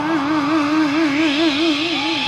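A female rock singer holding one long sung note into the microphone with a wide, even vibrato, about five wobbles a second.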